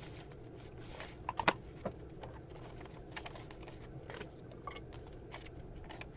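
Quiet room hum with faint taps and rustles of paper being pressed and handled on a craft mat, and a short cluster of small knocks about a second and a half in.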